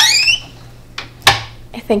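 A kitchen cabinet door being swung shut. It gives a short rising squeak at the start, then a sharp knock about a second in as it closes.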